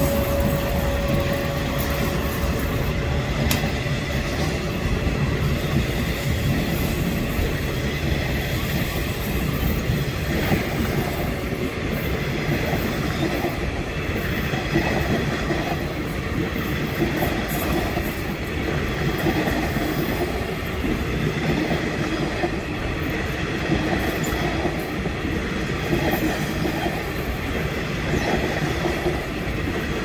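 Electric-hauled passenger train passing close by: the Phelophepa medical train's coaches rolling past with a steady rumble of steel wheels on rail. A steady whine is heard in the first couple of seconds as the tail of its class 18E electric locomotives goes by.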